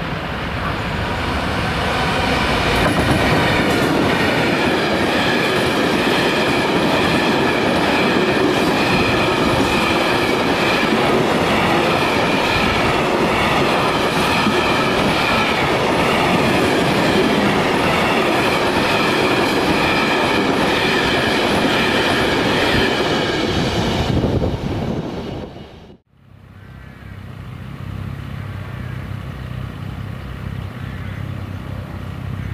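A freight train rolling past at close range, its wheels loud and steady on the rails for over twenty seconds. The sound then fades and cuts off abruptly, and a much quieter low hum follows.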